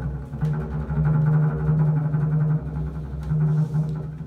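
Double bass played with the bow, holding a long low note for about two seconds, then a shorter low note near the end.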